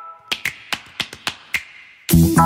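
A quick, uneven run of sharp clicks like finger snaps, about four a second, over a faint hiss.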